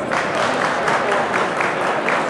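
Spectators clapping, starting almost at once and going on fast and steady: applause for a high jumper who has just cleared the bar.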